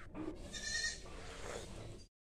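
A faint, brief animal call with a wavering pitch, a little after half a second in, over a quiet outdoor background.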